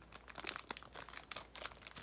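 Plastic wrapper of a 2017 Topps Series 1 baseball card fat pack crinkling in the hands, an irregular run of sharp crackles.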